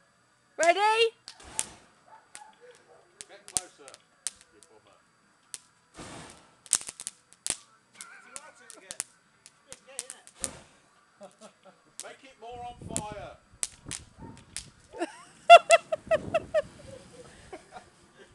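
Burning wooden trellis crackling, with scattered sharp pops and cracks at irregular intervals.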